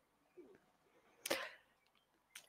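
Near silence: room tone in a pause between words, broken by one brief sharp noise a little over a second in.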